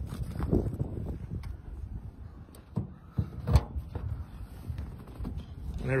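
Clunks and knocks of a 1928 Ford Model A Roadster's rumble-seat lid being unlatched and swung open, with one sharp knock about three and a half seconds in, over handling noise and wind.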